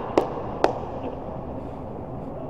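Two sharp taps about half a second apart, then the steady hum of a large indoor sports hall.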